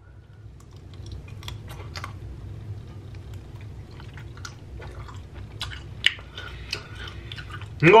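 A person chewing a piece of grilled giant scallop close to the microphone: scattered wet mouth clicks, with a sharper click about six seconds in. A low steady hum runs underneath.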